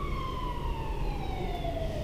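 Police car siren wailing, its pitch sliding slowly and steadily downward through the whole stretch.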